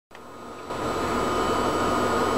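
Steady hiss and hum of bench equipment and room noise, with a faint high whine, getting louder over the first second and then holding steady.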